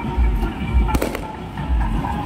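A single firecracker bang about a second in, over procession music with a heavy low drum beat.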